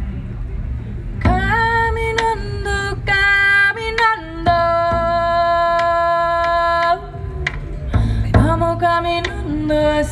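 A woman singing a slow melody solo into a microphone, over a hand-played frame drum. The voice comes in about a second in, holds one long note in the middle, breaks off briefly, then sings on.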